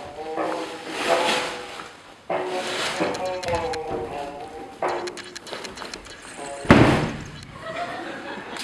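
A voice singing in short phrases with pauses between them, and one heavy thump, the loudest sound, near the end.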